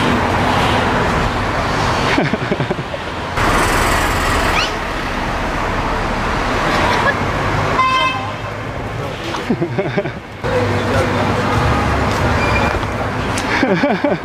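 Busy city street ambience: steady traffic noise and the chatter of passers-by, with a short horn toot about eight seconds in.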